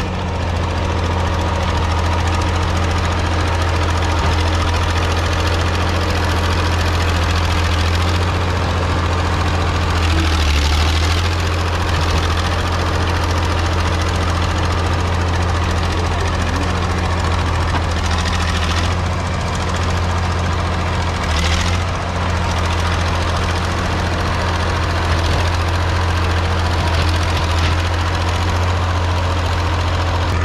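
1956 Caterpillar D6 9U crawler dozer's diesel engine running steadily with a deep hum while the machine crawls and pushes dirt with its blade. A few brief brighter noises come through about ten seconds in and again around twenty seconds.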